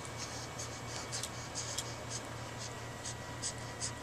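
Soft, irregular scratchy rustles, several a second, over a steady low hum.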